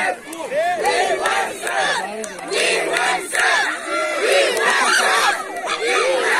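Crowd of spectators shouting and yelling during a penalty kick, many raised voices overlapping.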